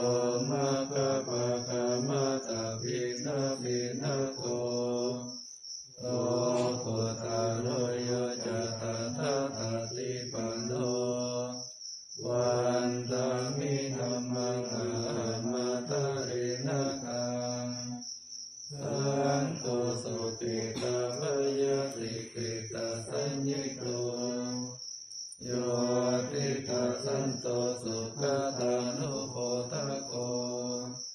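Buddhist morning chanting (tham wat chao) in Pali: voices recite on a near-steady pitch in long phrases, with a short breath pause about every six seconds. A steady high-pitched whine runs behind it.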